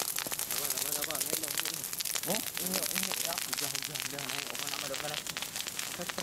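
Dense, irregular crackling of a peat and dry-vegetation fire burning, with faint voices talking underneath.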